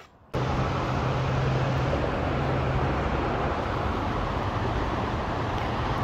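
Steady road traffic noise with a low engine hum, cutting in abruptly about a third of a second in.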